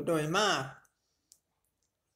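A voice reciting Thai scripture speaks one short phrase, then pauses; about a second later there is a single faint click.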